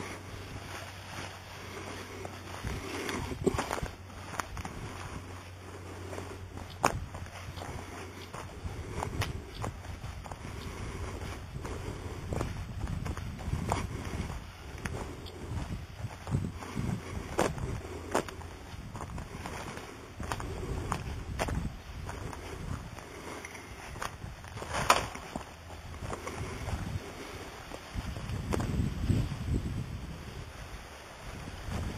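Footsteps on a dirt path with camera handling noise: irregular scuffs, clicks and knocks, one sharper click about 25 seconds in, and a louder low rumble near the end.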